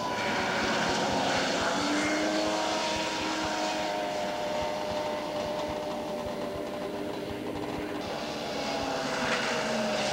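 Snowmobile engines running on the ice, their pitch falling slowly as a sled pulls away, then another sled's engine growing louder near the end.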